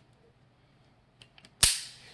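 Beretta 92S pistol's action worked by hand: a couple of faint clicks, then a single sharp metallic snap about a second and a half in, typical of the hammer falling.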